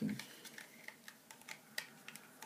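Light, irregular plastic clicks and taps from hands handling an AcuRite weather sensor's plastic housing, about half a dozen small clicks over two seconds.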